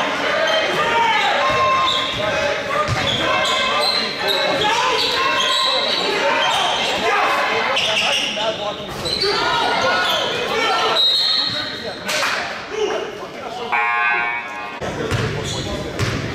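Basketball game in a large gym: a ball bouncing on the hardwood court among shouting voices, with a short buzzer-like tone about two seconds before the end.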